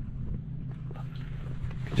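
An engine idling with a steady low hum, with a few faint clicks and knocks over it.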